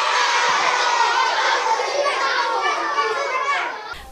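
A large group of young children's voices talking over one another at once: a steady, dense chatter that stops abruptly just before the end.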